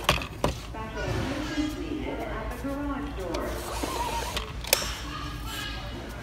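Indistinct voices talking in the background, with sharp clicks at the start, about half a second in and near five seconds as the bottom rail of a cordless shade is handled.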